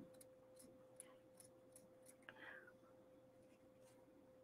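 Near silence: faint room tone with a low steady hum, a tiny tick about a second in and a faint brief rustle a little past the middle.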